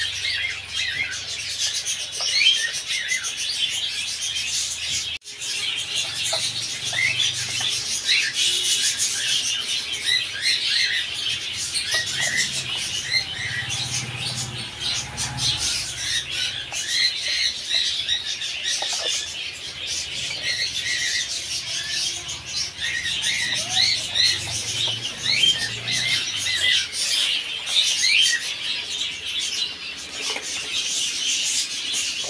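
Many caged birds chirping together: a dense, unbroken chatter of short high calls, with a brief break about five seconds in.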